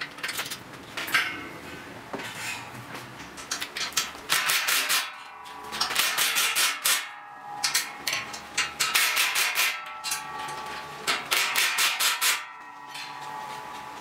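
Cordless impact driver rattling in four short bursts of rapid impacts as it drives fasteners into steel, after a few knocks of metal parts being handled at the start.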